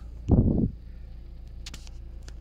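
A brief, loud low rumble of the phone being handled and brushed as it is swung up to the dashboard, followed by a couple of faint clicks near the end, over a steady low hum.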